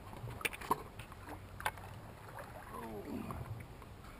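A few sharp knocks from a landing net and fishing gear being handled in a boat as a fish is netted and brought aboard, over a steady low hum, with a short voiced exclamation later on.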